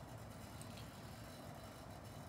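Quiet room tone: a faint, steady low hum with no clear event.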